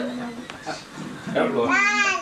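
A toddler's voice: short sounds at first, then a loud, high, wavering squeal and laugh near the end.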